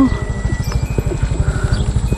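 Vehicle engine running with a fast, even low putter while moving along a dirt track.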